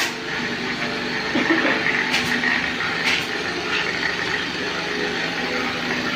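Steady workshop background noise, with a few sharp clicks about two and three seconds in.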